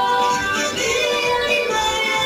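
A sung action song for children with instrumental backing, playing steadily with held notes.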